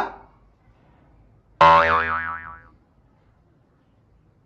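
Cartoon sound effects: a quick upward glide at the start, then a loud wobbling boing about a second and a half in that fades out over about a second.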